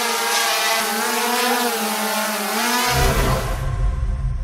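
Sound-effect buzz of a small quadcopter drone's propellers, a loud steady whine with a slightly wavering pitch. About three seconds in, a deep low boom comes in as the whine fades out.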